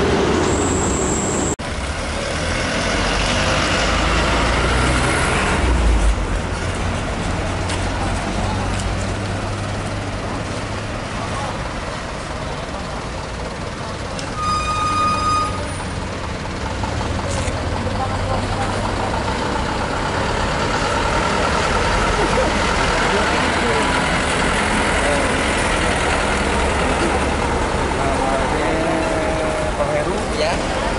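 Cars and trucks moving slowly in a queue, a steady engine rumble, with a horn sounding once for about a second near the middle.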